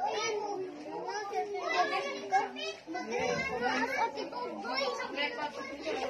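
Chatter of several voices talking over one another, some of them high-pitched, with no clear words.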